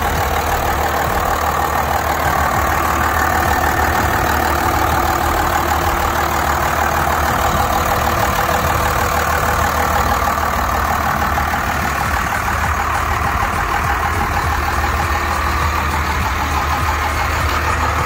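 1995 Dodge Ram 3500's Cummins 5.9 12-valve inline-six turbodiesel idling steadily.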